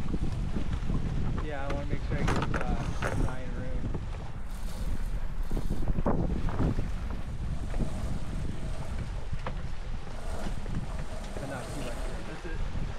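Wind buffeting the microphone and water rushing along the hull of a sailboat under sail, a steady rumbling noise throughout.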